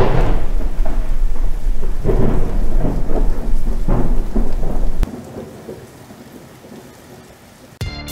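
A loud, crackling roll of thunder over the steady hiss of rain, surging several times. After about five seconds it drops abruptly to a quieter rain hiss.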